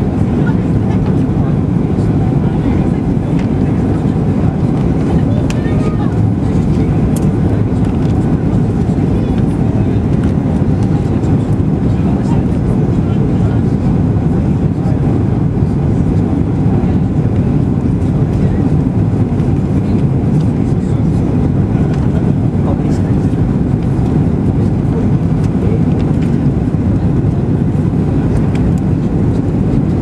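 Steady low rumble inside the cabin of a Boeing 737-800 on landing approach with flaps extended: airflow and its CFM56 engines, even in level throughout.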